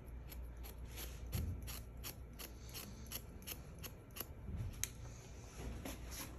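Hairdressing scissors snipping quickly and lightly into twisted sections of long hair, about three short snips a second, texturizing the hair internally.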